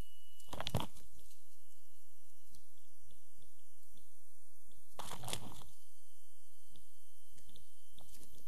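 Steady low hum with scattered short clicks, two small clusters of them standing out about a second in and near the middle.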